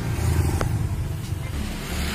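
A steady low rumble of a running vehicle engine, with a faint click about half a second in.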